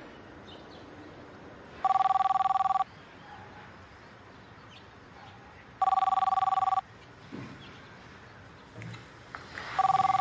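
Cordless telephone ringing with an electronic two-tone ring: one-second rings about four seconds apart, three in all, the third starting near the end.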